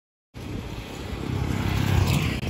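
After a moment of silence, sound cuts in abruptly: a small motorcycle passing close on a road, its engine rumbling and getting louder as it approaches.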